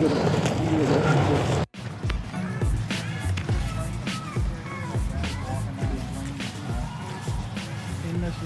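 Background music with a beat and indistinct voices. A loud rush of outdoor noise runs under them until it cuts off abruptly in an edit about two seconds in; after that the music and voices continue more quietly.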